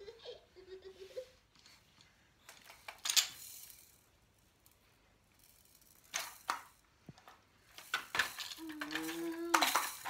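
Hard plastic and wooden toys clattering and knocking as a toddler handles them, in a few scattered bursts of sharp clicks with quiet in between. A woman's drawn-out voice comes in near the end.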